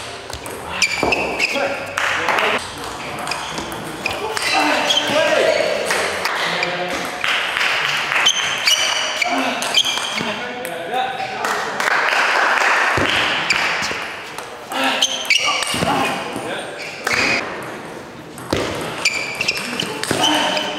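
Table tennis rallies: the celluloid ball clicking off rubber bats and bouncing on the table in quick series of sharp clicks, with voices in the background.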